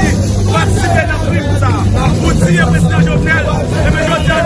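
A man speaking loudly into held-up phones amid a crowd's chatter, over a steady low hum.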